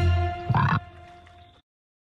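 A cartoon frog croak, one short burst about half a second in, over background music that then dies away.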